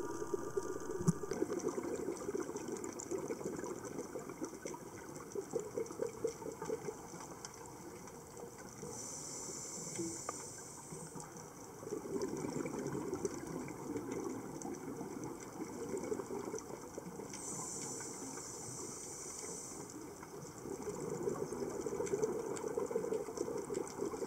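Scuba regulator breathing underwater: three stretches of exhaled bubbles bubbling and crackling, with two hissing inhalations between them, near the middle and a little past two thirds of the way in.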